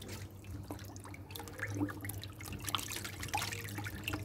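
Faint drips and small splashes of water in a plastic bucket holding live catfish, scattered irregularly, over a low steady hum.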